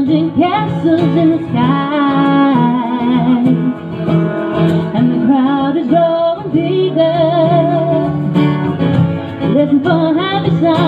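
Live song: a singer holding long, wavering notes over strummed acoustic guitar.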